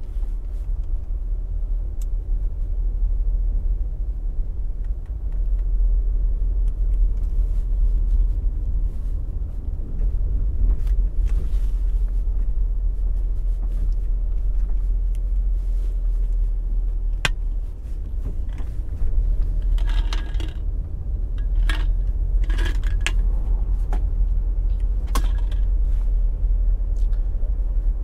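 Steady low rumble of a moving vehicle, road and wind noise on the camera, with scattered light clinks and rattles, most of them about twenty seconds in.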